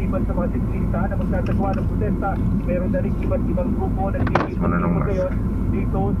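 A man talking over the steady low hum of a car cabin, with one sharp click about four and a half seconds in.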